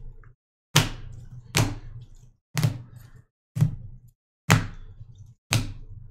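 Hard plastic magnetic card holders set down and knocked against one another one by one, six sharp clacks about a second apart.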